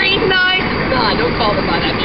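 A break in the acoustic guitar playing: a voice is heard over steady background noise, with no strumming.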